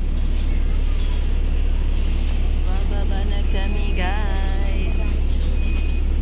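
Airport shuttle bus's engine running with a steady low rumble, heard from inside the crowded cabin; passengers' voices come through it in the middle.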